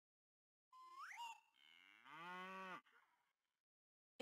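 A short whistle that glides sharply upward, then a cow mooing once for just over a second.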